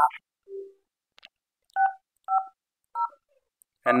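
Grandstream Wave softphone keypad tones: three short two-note touch-tone (DTMF) beeps, about half a second apart, as the call queue number 6501 is keyed in. A short, lower single beep sounds about half a second in.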